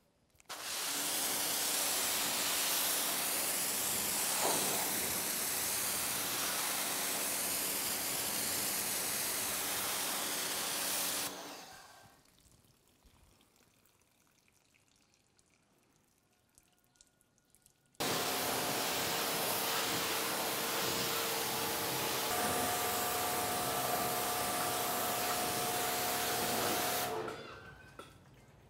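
Water spraying from a hose onto a car's waxed hood as it is rinsed, a steady hiss that runs for about eleven seconds, stops for several seconds, then starts again for about nine seconds.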